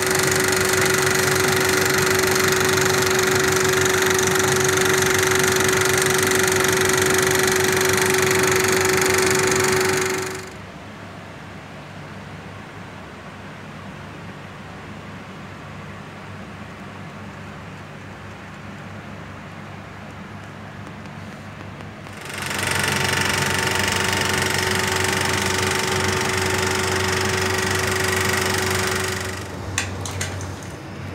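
Bauer cinema film projector running: a steady mechanical clatter with a held hum. It drops abruptly to a much quieter level about ten seconds in, then comes back up about two-thirds of the way through.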